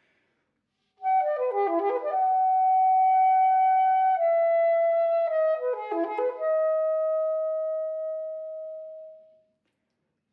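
Solo soprano saxophone. About a second in, a quick flurry of notes settles onto a long held note that steps down twice. A second quick run follows, then a long held note that fades away about nine seconds in.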